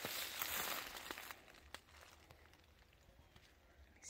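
Footsteps and rustling through leaf litter and undergrowth, loudest in the first second or so, then dying away to faint outdoor quiet with a few small ticks.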